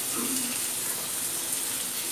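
Spice masala frying in oil in a kadhai, a steady sizzle.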